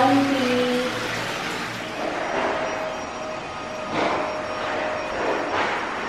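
Water running steadily into a tiled bath, with a few louder swells about four seconds in and near the end.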